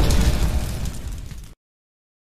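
Explosion sound effect from an animated logo intro, a deep rumble with crackle that dies away and cuts off suddenly about one and a half seconds in.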